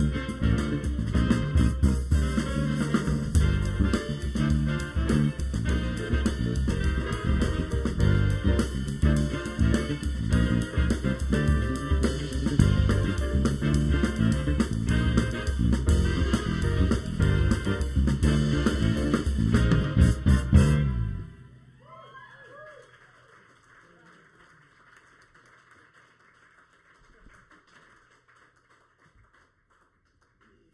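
A live jazz ensemble of grand piano, trombone, two trumpets, tenor saxophone, electric guitar, electric bass and drum kit playing a tune. The tune ends on a loud final accent about two-thirds of the way through, leaving only faint room sound.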